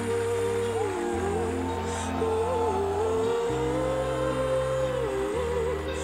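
Female lead vocal holding long, slightly wavering notes over deep sustained chords that change every couple of seconds: the slow, spacious opening of a pop song performed live.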